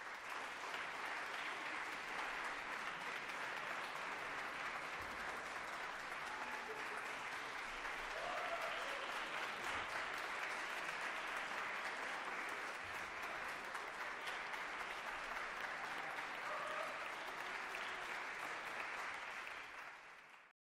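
Concert-hall audience applauding steadily, fading out at the very end.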